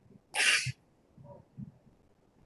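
A single short, breathy burst from a person, about half a second in, followed by a few faint small sounds.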